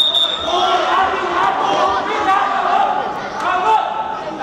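A short, high whistle blast at the start, then a futsal ball being kicked and bouncing on the hard court, echoing in a large sports hall, with voices calling throughout.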